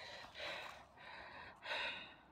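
Three soft, breathy gasps from a man.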